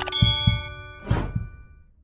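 A click and a bright bell ding that rings out and fades over about two seconds: a notification-bell sound effect for a subscribe-button animation. Low thuds sound underneath, and a short rushing noise comes about a second in.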